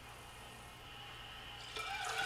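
Water from an opened refrigerator saddle tapping valve running faintly through a plastic tube into a plastic pitcher, a little louder near the end. The valve is flowing well, so it is not what restricts the water supply.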